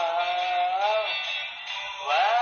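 A man singing a held, wavering note into a microphone over a backing track. The note bends up and ends about a second in, and the accompaniment carries on more quietly.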